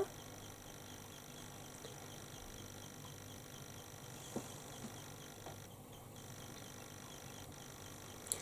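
Quiet room tone: a faint steady hiss, with a couple of soft ticks about four and a half and five and a half seconds in.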